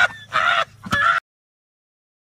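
A person laughing in three short, high-pitched cackling bursts, cut off suddenly just over a second in, followed by silence.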